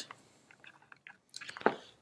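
Faint, scattered small clicks and handling noises in a quiet room, a few slightly louder near the end, with a short breath just before speech resumes.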